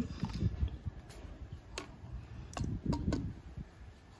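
Light clicks and knocks from handling the spin mop's stainless-steel and plastic handle sections as they are picked up for assembly: several sharp ticks spread over a few seconds, with a low handling rumble underneath.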